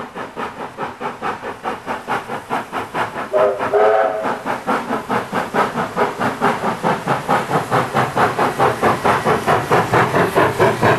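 NSW 36 class 4-6-0 steam locomotive 3642 working toward and past, its exhaust beating about four times a second and growing louder as it nears. A short whistle blast of several tones at once sounds about three and a half seconds in.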